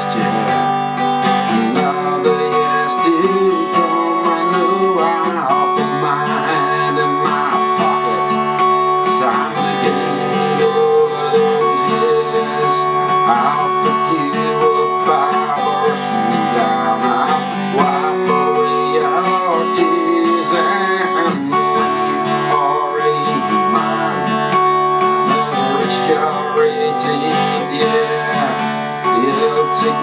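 Acoustic guitar strumming a steady chord accompaniment through an instrumental break between verses of a song, with a wavering melody line over the chords.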